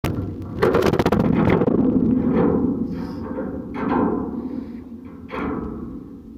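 Background music with deep, timpani-like drum hits about every second and a half, each ringing out over a low sustained rumble.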